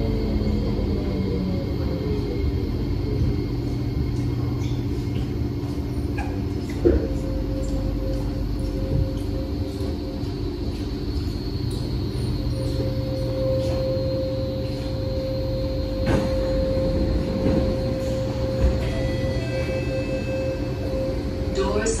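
Inside a Kawasaki Nippon Sharyo C751B metro train: the motor whine falls in pitch as the train brakes to a stop at the platform. A steady electrical hum from the standing train follows, with a few sharp clicks.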